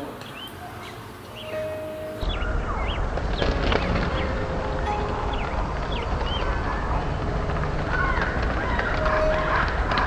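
Birds chirping, many short calls, over a steady low rumble; the sound comes in about two seconds in after a quieter moment.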